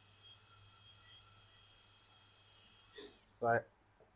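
High-speed dental handpiece with a water spray whining as its bur cuts the incisal edge of a manikin's upper front tooth during incisal reduction for a crown, grinding away the depth marks. The whine wavers in strength and cuts off about three seconds in.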